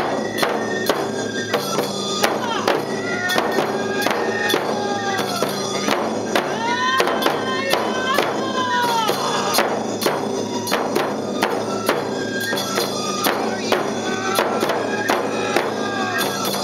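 Neputa festival hayashi music: large taiko drums beaten in a steady rhythm, with bamboo flutes playing gliding melody lines and small hand cymbals clashing over them.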